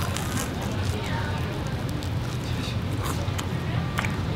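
A bite of crispy-shelled hotteok being chewed close to the microphone, with a few faint crunches, over a steady low background hum.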